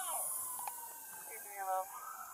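A distant police siren, faint, with a single tone falling slowly in pitch, and a brief far-off shout near the end.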